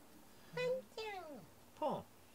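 A domestic cat meowing three times, each meow falling in pitch and the last one sliding down steeply: complaining meows, as the owner takes them.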